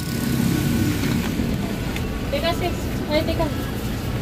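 Steady low rumble of a vehicle, heard from inside the cabin of a small passenger van, with faint voices talking briefly past the middle.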